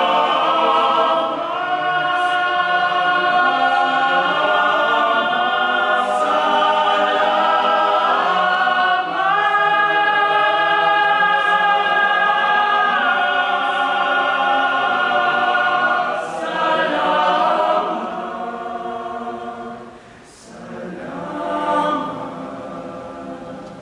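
Boys' choir singing a cappella in sustained chordal harmony, with a long high note held in the middle; near the end the sound fades, then swells again.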